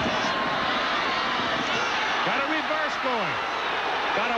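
Stadium crowd noise during a football play, a steady din throughout, with a man's voice heard briefly in the second half.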